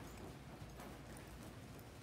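Faint, irregular hoofbeats of a horse walking on the soft dirt footing of an indoor arena.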